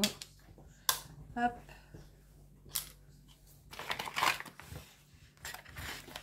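Crinkling and rustling of a kraft paper pouch as small diamond-painting tools are slipped back into it and it is folded shut, with a few sharp clicks and a longer rustle about four seconds in.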